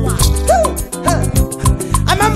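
Nigerian highlife music: a steady bass and percussion groove, with a couple of short sliding notes about half a second in.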